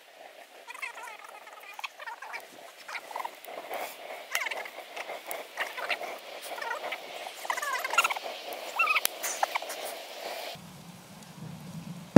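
Fire burning in a metal barrel, crackling with many sharp pops, joined several times by short squeaky, wavering high-pitched chirps.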